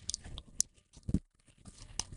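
A few faint, short clicks in a pause between speech.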